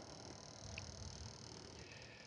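Faint steady background hiss of room tone, with no distinct sound.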